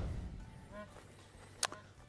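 A whoosh transition effect fading out at the start, then quiet outdoor background with a faint short chirp just under a second in and a single sharp click near the end.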